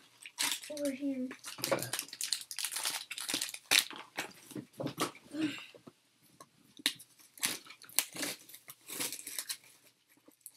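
Foil trading-card pack wrappers crinkling and tearing, with cards being handled and shuffled: a quick run of sharp crackles through the first half, thinning out to scattered ones later.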